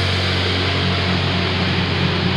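Progressive thrash metal: heavily distorted electric guitar and bass holding one low chord, ringing steadily without drums.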